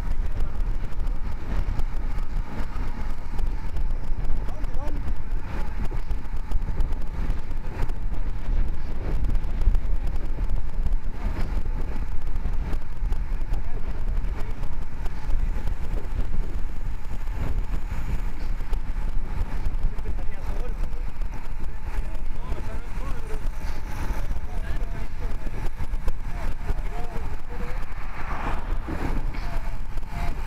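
Wind buffeting a bicycle-mounted camera's microphone at riding speed, a steady low rumble with tyre and road noise beneath it.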